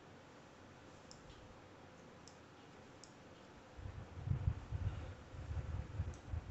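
A few faint, short clicks from grooming shears snipping hair on a dog's face. From about four seconds in there are louder low thuds and rumbling.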